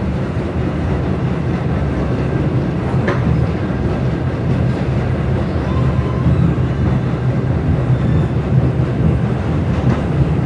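New York City subway N train running at speed, heard from on board: a steady, loud rumble of wheels on the track, with a single sharp click about three seconds in.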